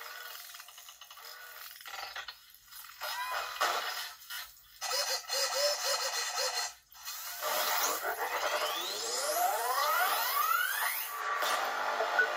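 Animated monster-fight soundtrack of music and sound effects playing through a laptop's speakers, with a short break about seven seconds in followed by a run of rising sweeps.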